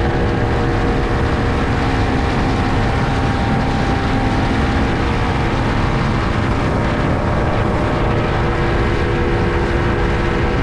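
Motorboat engine running steadily at speed, a constant drone with the rush of water from its wake.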